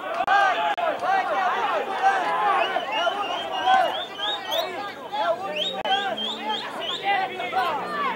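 Several people's voices shouting and chattering at once, indistinct and overlapping, some calls rising sharply in pitch.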